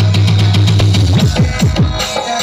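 Loud electronic dance music played over a truck-mounted stack of DJ loudspeakers: a long held bass note for about the first second, then fast kick drums and hi-hats come back in.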